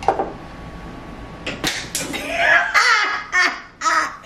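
A sharp knock near the start and a few quick clicks about one and a half seconds in, then a woman laughing from about two seconds on.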